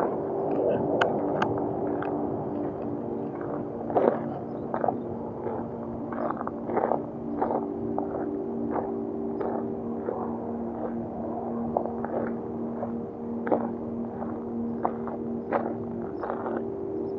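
Footsteps crunching on a gravel alley at a steady walking pace, about three steps every two seconds, over a steady low hum.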